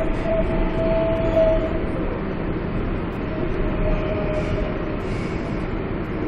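An R142A subway train running, heard from inside the car: a steady rumble and rail noise. A steady whine fades out about two seconds in and comes back briefly a little past the middle.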